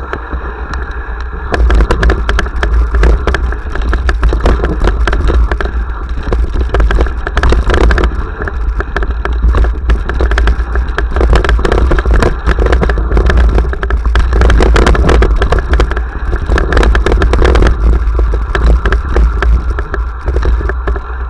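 Mountain bike riding fast down a rough dirt singletrack, picked up by a handlebar-mounted camera: continuous irregular rattling and clattering of the bike over stones and roots over a heavy low rumble of wind and tyre noise, getting louder about a second and a half in.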